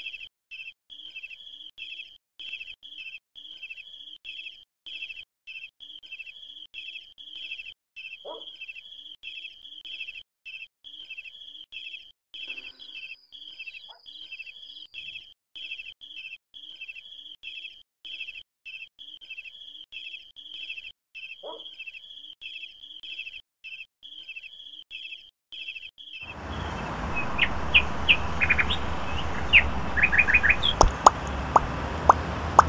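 Crickets chirping steadily, about two chirps a second, with an occasional short louder call. A few seconds before the end this cuts abruptly to outdoor ambience: a steady low rumble with birds chirping over it.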